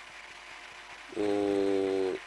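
A man's drawn-out hesitation sound, 'eee', held at a steady pitch for about a second, starting just past the middle after faint background hiss.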